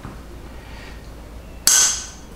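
A screw cap being twisted hard on a glass whiskey bottle: near the end a sudden, short, high-pitched crack and scrape that fades within about a third of a second, over a low room hum.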